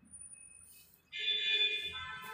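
A loud electronic tone starts suddenly about a second in and steps down to a lower pitch near the end, alarm-like in character.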